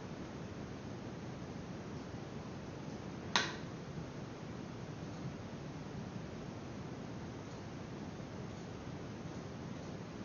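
A single sharp click about three and a half seconds in, over a steady faint hiss of room and microphone noise.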